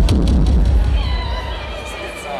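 Live rock band coming in loudly all at once, heavy bass and drums with electric guitar, easing slightly after about a second as high sustained guitar tones ring above.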